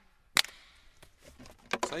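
Near silence with one sharp click about half a second in and a few faint ticks after it, then a man starts speaking near the end.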